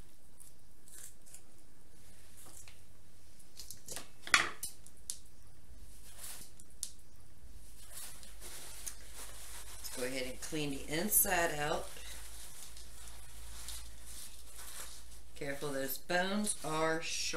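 Kitchen shears snipping through a raw chicken's backbone: a run of sharp clicks and crunches, with one loud snap about four seconds in. A voice is heard briefly about two-thirds of the way through and again at the very end.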